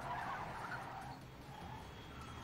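Faint sound of a car being driven hard in a TV series' soundtrack, with tyres skidding.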